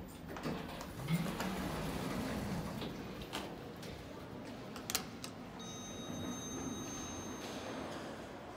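Otis Gen2 elevator's automatic sliding doors opening at a landing, the door operator running with a mechanical rumble. Sharp clicks come about a second in and about five seconds in, and a thin, steady high whine lasts about two seconds in the second half.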